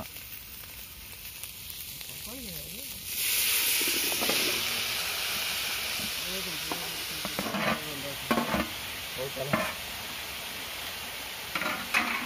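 Hot oil sizzling in an aluminium kadai as diced green papaya is tipped in. The sizzle starts suddenly about three seconds in and keeps on steadily, with a few knocks of the metal plate against the pan near the middle.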